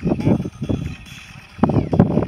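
Gusts of wind buffeting an outdoor microphone: three low rumbles, at the start, briefly just after half a second, and near the end.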